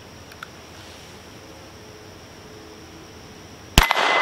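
Quiet outdoor background with a faint click about half a second in, then near the end a sharp shot from a Bauer .25 ACP pocket pistol, followed by the ringing of the steel target it hits.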